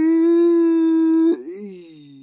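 A woman's voice holding one long, loud, high cry at a steady pitch, which breaks off about a second and a half in and slides down in pitch, fainter.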